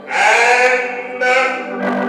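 A man singing a gospel line into a handheld microphone over a PA, two held phrases with a slight waver in pitch.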